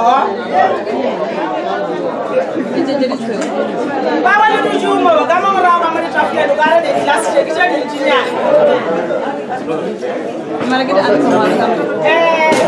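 A woman speaking into a microphone, with chatter in the background.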